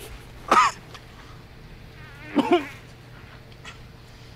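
A man groaning twice: a short cry about half a second in, then a longer wavering groan a couple of seconds later.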